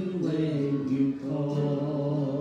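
A man and a woman singing a slow worship song together into microphones, holding long notes, with acoustic guitar accompaniment.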